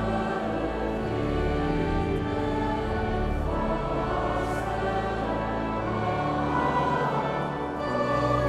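Choir and congregation singing a Dutch hymn together, over instrumental accompaniment with sustained low bass notes.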